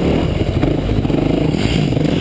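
Dirt bike engine running at close range, its pitch rising and falling as the throttle is worked on and off.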